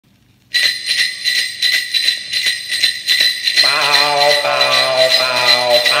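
Opening of a 1961 doo-wop Christmas single played from a 45 rpm record on a vintage Teppaz portable record player: sleigh bells start about half a second in, shaken at about two or three strokes a second with a steady high ring. Sustained harmony joins after about three and a half seconds.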